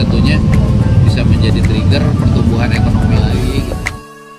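Indistinct talking over a loud, steady low rumble, fading in the last half second.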